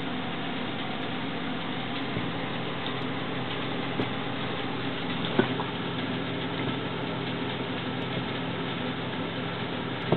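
Steady hum of a bench oscilloscope's cooling fan with a low electrical buzz, and a few faint clicks about two, four and five and a half seconds in.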